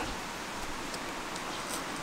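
Steady soft hiss with faint rustling of the tent's nylon fly as a hand works a vent flap.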